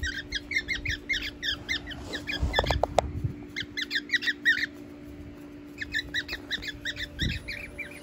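Small pet parrots in an aviary squawking in rapid, harsh calls as they fight. The calls come in two flurries with a lull around the middle.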